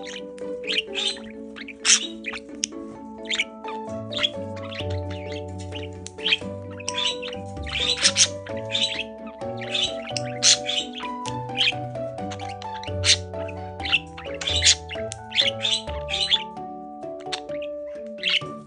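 Background music with steady held notes. Over it, a budgerigar chirps and chatters in many short, irregular calls while in a hormonal courtship display.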